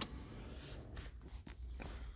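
Quiet car cabin with the engine not running: a faint low rumble and a few soft, short rustles and taps.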